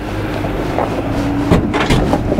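Jeep Gladiator's 3.6-litre V6 idling steadily as the manual truck crawls in four-low with the clutch fully out. Near the end come a few short knocks as the underside barely brushes the obstacle.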